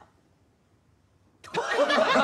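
Near silence, then about a second and a half in, a group of people breaks out laughing together, many voices at once.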